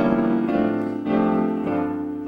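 Roland portable digital piano played in full chords, the harmony moving about twice a second.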